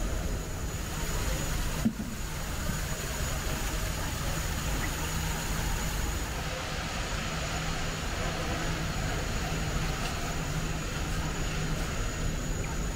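Steady rushing background noise over a low hum, with one sharp knock about two seconds in.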